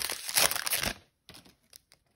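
Foil wrapper of a Magic: The Gathering booster pack crinkling as it is torn open and pulled off the cards; it stops about halfway through, leaving only a few faint light clicks.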